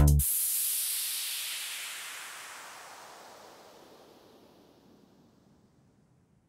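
End of an electronic italo disco track: the drum-machine beat cuts off right at the start, leaving a hissing synthesized noise sweep that falls in pitch and fades out over about four seconds.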